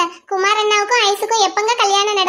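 A high-pitched voice speaking or singing in quick, bending phrases, with a short break just after it starts.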